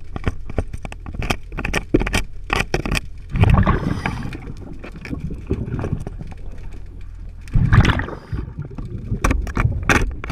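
Scuba diver's exhaled bubbles rushing from the regulator twice, about four seconds apart, over a steady low underwater rumble. Frequent sharp clicks and taps run through it.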